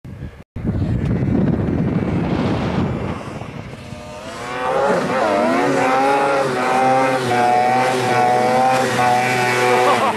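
Snowmobile engine held at high revs as the machine skims across open water toward the camera: a steady engine whine that swells in from about halfway through and holds loud to the end. A low rushing noise fills the first three seconds.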